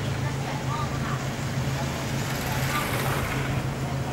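A steady low hum of a motor running, with faint voices.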